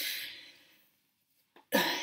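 A woman's breath trailing off right after speech, then near silence broken by one small click, and a breath drawn in just before she speaks again near the end.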